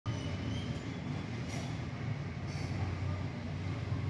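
Steady low rumble of background noise with a faint hiss above it.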